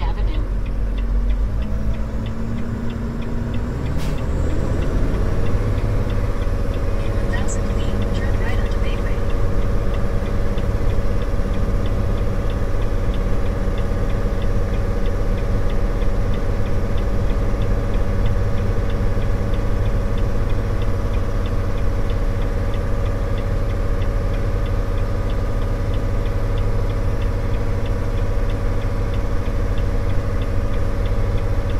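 Volvo VNL860 semi-truck's diesel engine running, heard from inside the cab: its pitch rises a few seconds in, then holds as a steady drone while the truck drives at low speed. A faint, regular ticking runs under it.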